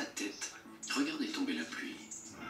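Television sound playing from the set's speakers: a voice talking over background music.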